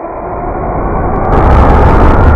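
Logo-animation sound effect: a whoosh swelling steadily louder, widening into a bright hiss about a second in, over a deep rumble.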